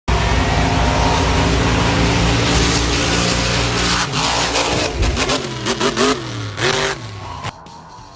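Monster truck engine running loud and steady, then revving up and down several times about five to seven seconds in, and dropping away near the end.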